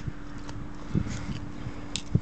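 Handling noise from a wooden-and-wire bird trap cage: a few soft knocks about a second in and a sharper click near the end as a hand reaches in for the caught bird.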